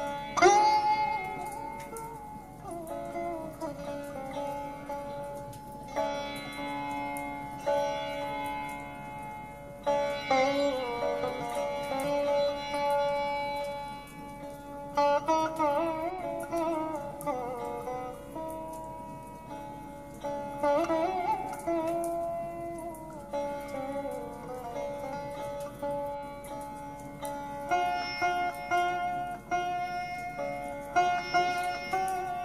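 Indian sitar music: plucked notes with sliding pitch bends over steadily held tones.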